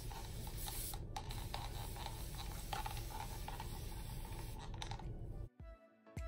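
Scratchy rubbing as hair color wax is worked along a section of curly hair, over background music. The rubbing stops abruptly about five and a half seconds in, leaving the music with a clear thumping beat.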